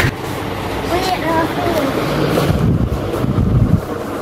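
Steady rushing noise on the phone's microphone, with faint voices about a second in.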